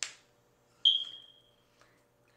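Hand noises from sign language: a soft brushing tap at the start, then a sharp tap about a second in that leaves a short high ring fading away, over a faint steady hum.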